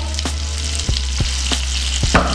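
Pieces of cazón fillet frying in oil in a hot stainless steel pan: a steady sizzle with a few sharp ticks scattered through it.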